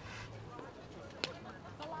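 Background voices talking, with one sharp click a little over a second in.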